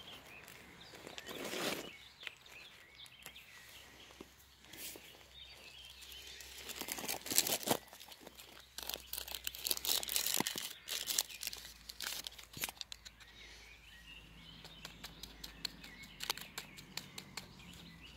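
Close handling noises: a rustling scrape about a second in, then paper crinkling and rustling with many small scattered clicks, busiest from about six to thirteen seconds in, as a folded paper is readied for collecting pollen.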